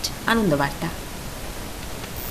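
A short spoken word falling in pitch, then a steady hiss of background noise with no voice.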